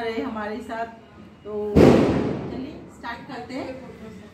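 A single sudden bang about two seconds in, the loudest sound here, fading over about a second, between stretches of a woman speaking.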